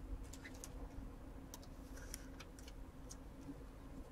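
Faint, scattered light clicks and taps of trading cards and foil packs being handled on a tabletop.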